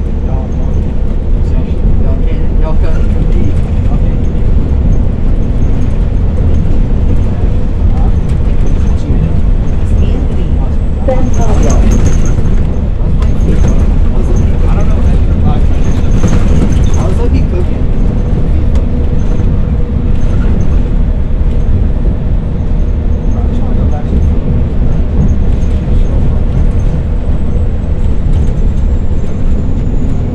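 Cabin noise aboard a 2013 New Flyer XDE40 diesel-electric hybrid city bus (Cummins ISB6.7 diesel, BAE Systems HybriDrive) under way: a loud, steady low rumble of drivetrain and road noise, with a thin steady whine over it for much of the time.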